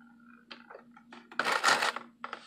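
A few light clicks, then a short, harsh scrape of about half a second as a screwdriver works a car radiator's screw-type drain plug to let coolant drip out, over a steady low hum.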